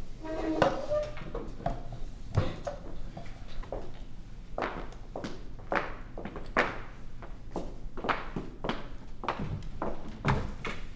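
Footsteps of two people walking away across a hard floor, an irregular run of short knocks, with a brief scrape about half a second in.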